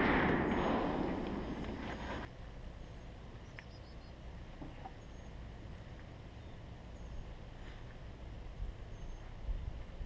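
The ringing echo of an M1 Garand's .30-06 shot dying away, cutting off about two seconds in. After that, quiet open-air ambience with a few faint ticks.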